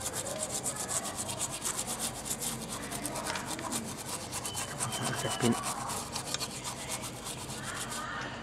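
A toothbrush scrubbed rapidly back and forth over the solder side of an amplifier circuit board, a fast steady run of bristle strokes, to wash off the residue left by soldering.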